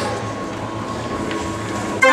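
Hand-cranked street organ being wound up: a steady mechanical rumble and air noise from the crank and bellows, with a low pulsing hum and a faint held tone, just before the organ starts to play.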